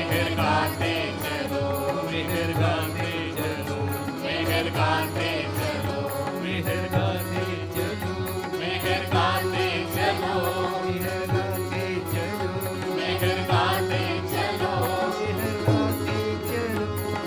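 Devotional chanting sung to musical accompaniment over a steady drone.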